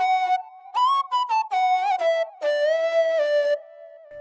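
Serum synth lead built from a rendered flute sample, distorted and filtered, with a ping-pong delay, playing a short phrase of several notes that step downward. It ends on a long held note with a slight wobble, and a faint delay echo trails on after it near the end.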